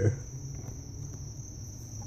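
A steady high-pitched background tone, with a faint low hum beneath it.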